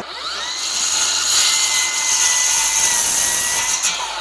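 Milwaukee cordless circular saw spinning up with a rising whine, then cutting steadily into the end of a glulam timber beam for about three seconds. It stops just before speech resumes.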